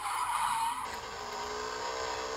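Racing go-kart engine running steadily at speed, its note holding nearly level, with a hiss over it in the first second.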